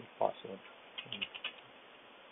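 Computer keyboard being typed on: a quick run of about five keystrokes about a second in. A brief spoken word comes just before it and is the loudest sound.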